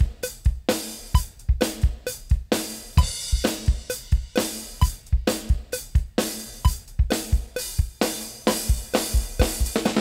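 Sampled drum-kit loop playing back: kick, snare, hi-hat and cymbal in a steady, evenly spaced groove at about 131 beats a minute.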